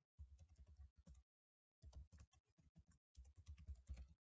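Faint typing on a computer keyboard: two runs of quick keystrokes with a short pause between them.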